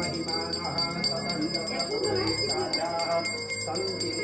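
A small hand bell rung rapidly and continuously, as during a Hindu puja, with voices singing along.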